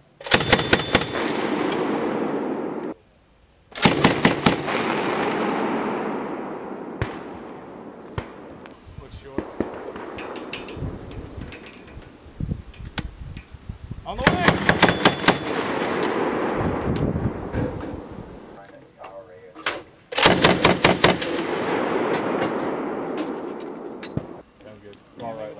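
Mk 19 40 mm automatic grenade launcher firing four short bursts, each a quick string of shots at about six a second followed by a long rolling echo that slowly fades. The first burst cuts off abruptly about three seconds in.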